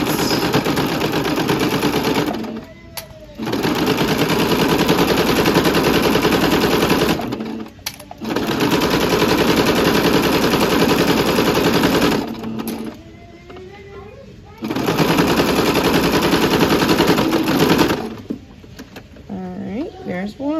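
Singer Starlet sewing machine with a walking foot, stitching a quarter-inch seam through two layers of fleece: fast, even clattering stitching in four runs of a few seconds each, with short pauses between them as the fabric is turned and guided.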